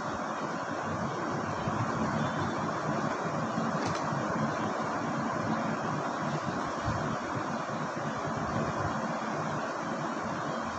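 Steady, even background noise with no speech, such as room or microphone hiss, with a single faint click about four seconds in.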